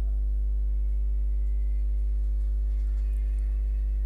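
Steady low electrical hum at mains frequency with a stack of overtones above it, unchanging in level and pitch.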